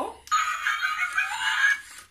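Battery-operated Halloween decoration playing its spooky electronic sound effect through a small tinny speaker, set off by a press of its button. It lasts about a second and a half.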